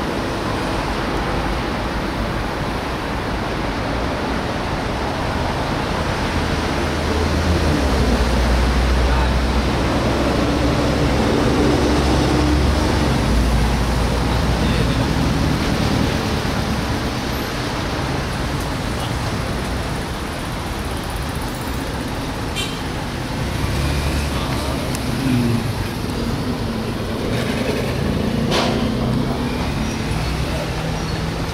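Road traffic noise, a continuous rumble that swells as vehicles pass about eight to thirteen seconds in and again near the end.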